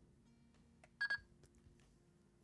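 Two short electronic beeps in quick succession about a second in, the confirmation that the wireless panic button has been paired with the smart alarm system.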